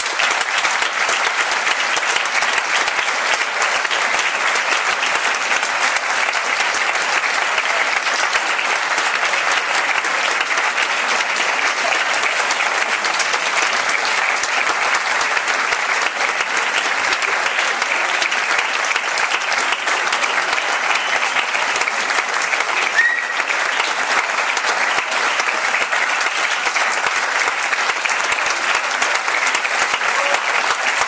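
Audience applauding steadily, a dense, even clapping that holds throughout.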